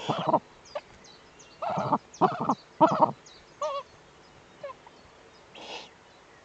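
Eurasian eagle-owl at the nest giving a string of short, loud calls, three of them about half a second apart in the middle, followed by a short hiss near the end. Faint high songbird chirps come and go in the background.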